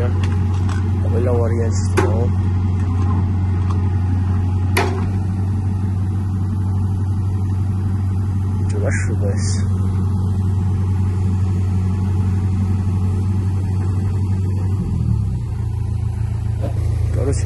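A heavy engine running steadily with a deep hum, its note shifting about a second before the end, with a couple of sharp clicks early on.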